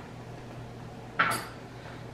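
A brief clatter about a second in: a wooden cutting board knocking on a stone countertop as it is picked up.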